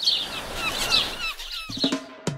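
Songbirds chirping: a quick series of short, curved, rising-and-falling chirps. Music starts up near the end.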